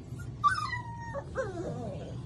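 Young Central Asian Shepherd puppy whimpering: a sudden high squeal about half a second in, then a second wavering whine that slides down in pitch.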